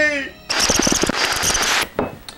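A held voiced note ends at the start. About half a second in, a loud burst of dense, rapid crackling noise lasts just over a second and cuts off abruptly.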